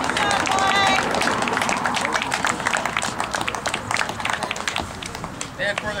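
A small group clapping by hand: many irregular claps that thin out and fade toward the end. A voice calls out briefly near the start.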